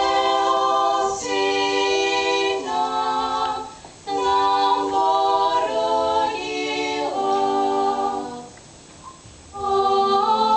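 Three girls singing a cappella in harmony, holding long notes in phrases. The singing pauses briefly about four seconds in and again near the end.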